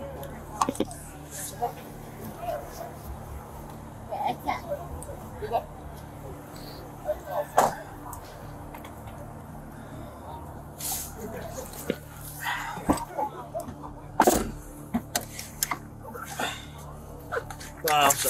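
Body-camera audio of indistinct, unintelligible voices with scattered clicks and knocks from handling inside a car at its open door. The loudest is a sharp knock about fourteen seconds in, over a steady low hum.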